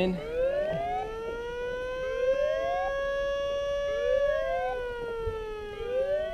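A warning siren sounding: a long tone that slowly rises and then sinks, with a shorter rising whoop repeating about every two seconds over it.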